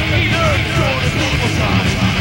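Heavy metal band playing a 1985 demo song, heard as a lo-fi live rehearsal-room recording made on a Betamax VCR: distorted electric guitars over a steady beat, with a melody line sliding up and down in pitch.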